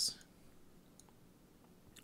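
A single faint click about a second in, from a computer mouse, against quiet room tone.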